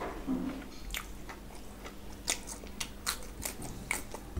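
A person chewing a mouthful of food close to the microphone, with wet mouth clicks and smacks that come thicker in the second half.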